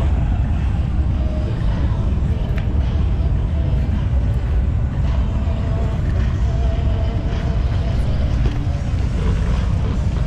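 Motorcycle engines running as a steady low rumble, with faint wavering engine tones above it.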